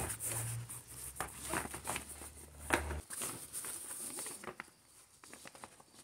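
Nylon fabric rustling and crinkling in short scattered bursts as a stuff sack is packed by hand, with a faint low hum that cuts off about halfway through.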